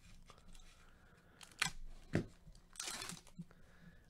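Plastic trading-card pack wrapper being torn open and handled, faint: a couple of short crackles, then a longer crinkling tear near the end.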